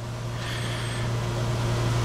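A pause between spoken sentences filled by a steady low electrical hum, with a soft hiss that rises slightly from about half a second in.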